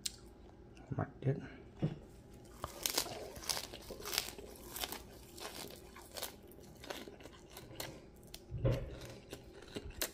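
Crisp crackling and crunching of fresh raw herb leaves, a quick run of sharp little snaps between about three and seven seconds in.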